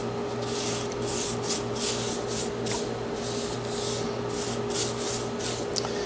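Bristle paintbrush swishing wood stain across a maple plywood top, quick strokes about two to three a second, over a steady low hum.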